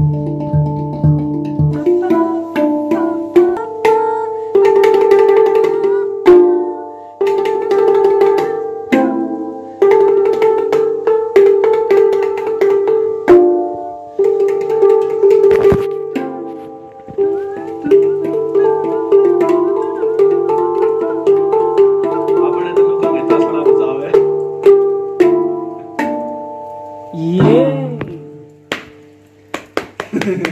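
Handpan (hang drum) played with the fingers: a flowing melody of struck steel notes that ring on and overlap, with quicker runs of notes between longer held tones.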